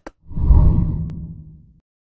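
Low whoosh sound effect of a TV news channel's logo transition, swelling about half a second in and fading away over the next second, after a brief click at the very start.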